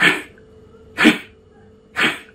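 Forceful exhalations through the nose in kapalbhati pranayama breathing: short, sharp puffs about one a second, each dying away quickly.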